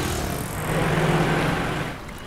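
Auto-rickshaw engine running in city traffic, with a steady low drone that grows louder in the second half.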